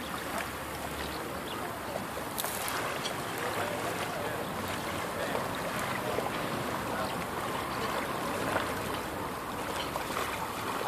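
Small waves lapping and splashing at the water's edge of a calm tidal bay, a steady fine watery crackle.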